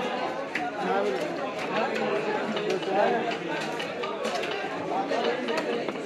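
Many people chattering in a busy market, overlapping so that no single voice stands out. Over it come scattered short, sharp scrapes and clicks of a knife blade working on a large rohu fish on a wooden chopping block.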